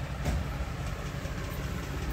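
Steady low background rumble with a brief click or rustle about a quarter of a second in.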